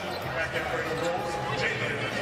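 Basketball broadcast game sound: arena crowd noise and on-court sounds of a scramble for a rebound under the basket, with a commentator's voice in the mix.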